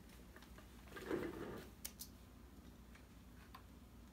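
Quiet room tone with a soft rustle about a second in and a handful of faint, separate clicks.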